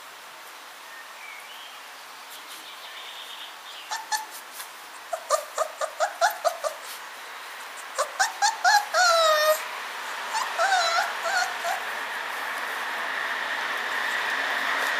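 Samoyed puppies yipping and whimpering in short high-pitched calls, a quick run of about half a dozen around five seconds in, more around eight seconds and again near eleven seconds. A few sharp clicks come just before the first calls, and a rising hiss builds through the second half.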